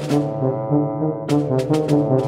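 Background music led by low, brass-like notes over a steady bass line, with several sharp percussive hits, the last ones close together near the end.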